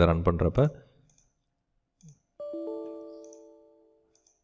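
A short electronic chime: several pitched notes that enter one after another in quick succession, then ring on and fade out over about a second and a half.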